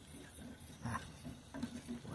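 A fork stirring hot chocolate in a stainless steel saucepan: faint, irregular scraping and light metal-on-metal clinks, one slightly louder about a second in.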